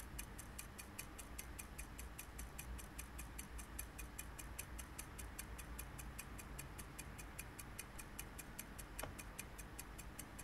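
A clock ticking quietly and steadily, about four to five ticks a second.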